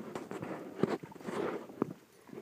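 Soft, irregular squelching and splashing steps in wet mud and shallow water, with a couple of sharp knocks.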